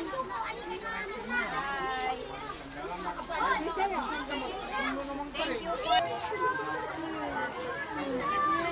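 Children chattering and calling out over one another, with adult voices among them.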